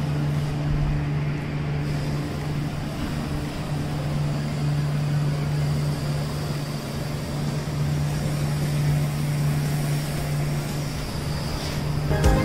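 Steady drone of a large factory running, a constant low hum under a wash of machinery noise.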